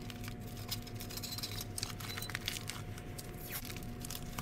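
Faint crackle and rustle of blue painter's tape being handled and pressed onto a strip of aluminium foil over a newspaper bundle, with small scattered ticks. A steady low hum runs underneath.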